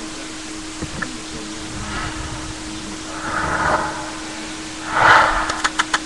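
A steady electrical hum and hiss from the webcam microphone, with faint knocks and rustling as a person moves about close to it, and a louder burst of noise about five seconds in.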